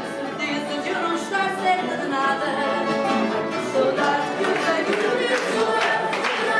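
Live fado: a woman singing with guitar accompaniment, in a reverberant hall.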